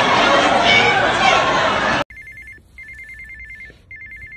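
Loud crowd noise with voices cuts off suddenly about halfway. A phone then rings with a trilling two-tone ring, in bursts of half a second to a second with short gaps.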